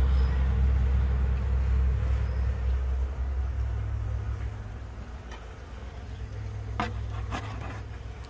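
Honeybees buzzing around a dense cluster crowded on a hive's entrance, over a steady low hum. The sound fades somewhat in the second half.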